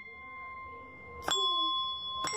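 Musical desk bell (tap bell) struck once after about a second. Its clear ding rings on, held over the still-sounding tone of an earlier strike.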